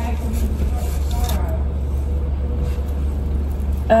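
Steady low hum of a car idling, heard from inside the cabin, with faint soft voices about a second in.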